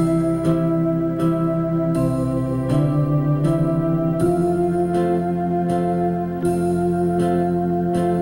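Lowrey home organ playing a slow waltz in 3/4 time with a theater organ voice and vibes over sustained chords, backed by its automatic waltz rhythm accompaniment.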